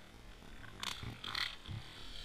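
A largemouth bass dropped from above the bank hitting the water with a splash a little under a second in, followed by more splashing.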